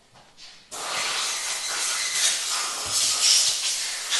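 A loud steady hiss, like rushing air or rubbing, starts abruptly less than a second in and carries on.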